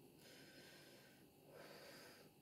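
Near silence: faint room tone with a soft breath near the end.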